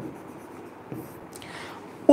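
Faint sound of a stylus writing on an interactive smart-board screen, light rubbing with a few small taps as the letters are drawn.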